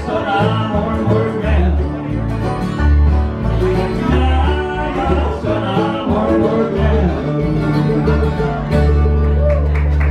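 Bluegrass band playing live: acoustic guitars, banjo, fiddle and bass, the bass striking short notes under the picking. About nine seconds in, the band settles on one long held chord to close the song.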